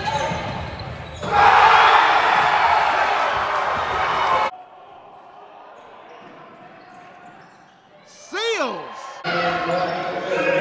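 Indoor basketball game sound in a large gym, changing abruptly between clips. A loud rush of crowd noise lasts about three seconds, then comes a quieter hiss. Near the end one voice gives a short shout that rises and falls in pitch, followed by voices.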